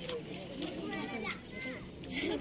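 Children's voices chattering in the background, with a few brief sharp clicks.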